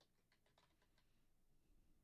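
Near silence, with very faint computer keyboard typing: a quick run of keystrokes that stops about a second in.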